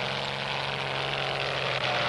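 Cartoon sound effect of a propeller airplane's engine, a steady drone with a low hum, starting abruptly as the plane appears.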